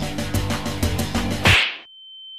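Background music with a steady beat, cut off about one and a half seconds in by a sudden loud burst of noise from an editing sound effect. A single high, steady beep tone follows near the end.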